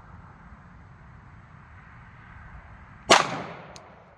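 A single 9mm +P pistol shot from a Glock 17 about three seconds in, sharp and loud, with an echo that dies away over most of a second. A short click follows about half a second after the shot.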